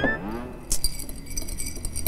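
Comedy sound effects: a sliding, whistle-like tone falls away at the start. About two-thirds of a second in, a click sets off a bright, glittering tinkle like chimes or shaken glass that rings on.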